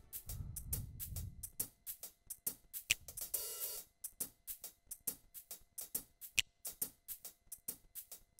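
Electronic keyboard's drum rhythm playing quietly: a steady run of hi-hat ticks, with a low note in the first second and a short cymbal swell about three and a half seconds in.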